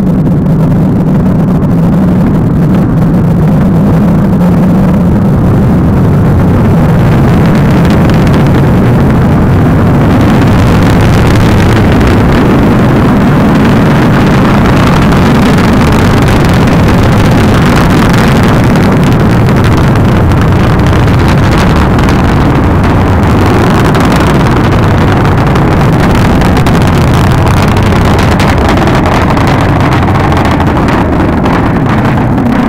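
Falcon 9 first stage's nine Merlin engines during ascent: loud, steady rocket engine noise, strongest in the low range.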